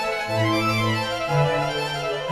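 Background music: long held melodic notes over a bass line that moves to a new note every half second or so.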